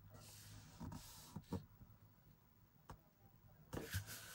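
Faint rustling and rubbing of paper as hands press and smooth a paper strip down onto a journal page, with a few soft taps and a louder rustle near the end.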